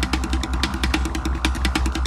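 Hard electronic dance music from a live set: a steady, heavy bass pulse under rapid, evenly spaced hi-hat ticks.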